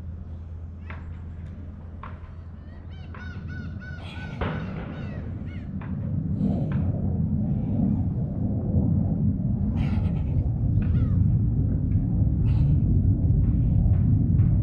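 Birds calling: a quick run of short, harsh repeated calls about three to four seconds in, with scattered single calls after. Under them a low rumble grows louder from about six seconds on.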